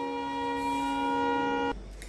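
A steady, sustained pitched tone with several overtones, holding one pitch, that cuts off suddenly near the end.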